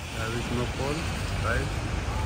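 Steady traffic noise of a wet city street, with a few short snatches of people's voices.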